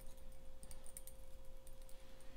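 Faint light metallic clicks as a hand-turned twisting tool winds the end of a steel spinner wire shaft into barrel twists, over a steady low hum.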